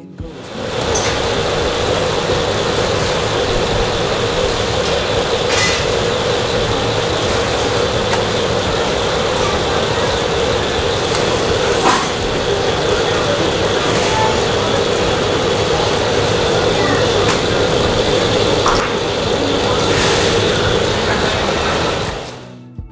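Loud, steady machine noise with a constant hum from flatbread bakery equipment around a clay oven, with a few sharp knocks spread through it.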